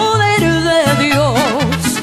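Mariachi band playing an instrumental passage: a walking bass line under held melody notes that swell into a wide, wavering vibrato about halfway through.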